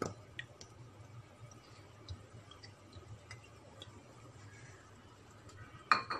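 Pan of thick tomato spaghetti sauce on the heat, giving scattered faint pops and ticks, with a sharper click at the start and a louder one just before the end.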